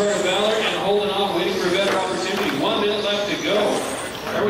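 A man talking, indistinct, with the echo of a large hall.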